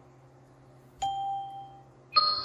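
A single electronic ding about a second in, fading away over most of a second. It is the Flexijet 3D laser measuring system's signal that a measured point has been taken.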